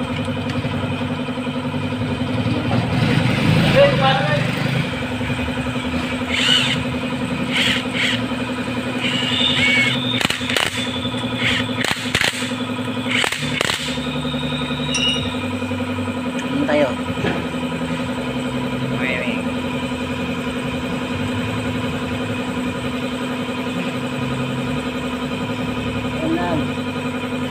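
A steady machine hum at one constant pitch runs throughout. Over it, hand tools click and knock on the motorcycle engine's side cover as its bolts are worked loose, with a cluster of sharp clicks between about ten and fourteen seconds in.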